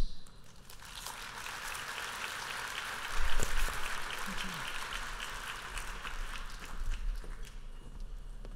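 Audience applauding, a steady patter of many hands that thins out near the end. There is a low thump about three seconds in.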